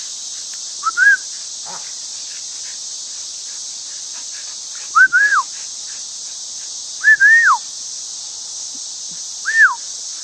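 A steady, high insect drone, with four short, pure, whistle-like calls over it that each rise and then fall in pitch: about a second in, at about five and seven seconds, and near the end.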